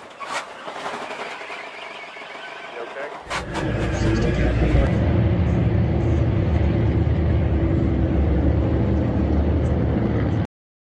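Race car engines: a quieter mixed background for the first few seconds, then a loud, steady engine rumble starts about three seconds in and holds.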